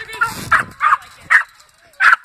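A dog barking three times in quick succession, short sharp barks about half a second apart.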